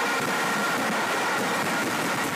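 Steady background noise with no distinct events: an even hiss-like haze with a faint high hum.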